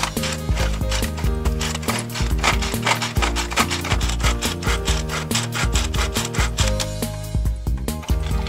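Toy pull-string blender being run by repeatedly pulling its cord, a fast rasping rattle of rapid strokes that stops about seven seconds in, over cheerful background music.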